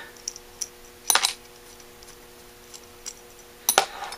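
Small metal screws and parts of a Holley 1904 carburetor being handled by hand during teardown: a few light clicks, then two sharper metal clinks, about a second in and near the end.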